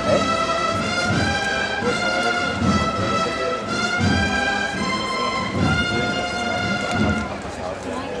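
A Holy Week processional band of cornets and drums playing a slow march, with long held melody notes over drum beats, and crowd chatter underneath; the music eases a little near the end.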